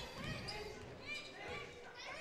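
Faint gymnasium sound of a basketball game: a ball being dribbled on the hardwood court, with distant voices.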